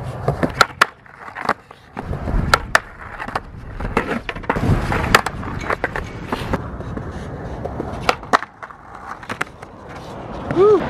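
Skateboard rolling on a concrete skatepark, broken by many sharp clacks of the trucks and board hitting the ledge and the ground during 50-50 grind attempts.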